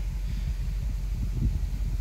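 BMW M850i's 4.4-litre twin-turbo V8 idling with a low, steady rumble, mixed with wind noise on the microphone.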